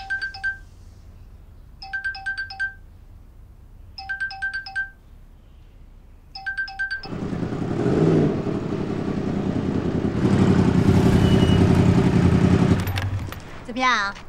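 A mobile phone ringtone: a short run of quick electronic beeps repeating about every two seconds, four times. Then a Yamaha R1 sport motorcycle engine comes in loud about seven seconds in, rising in pitch as it is revved, runs steadily, and cuts off shortly before the end.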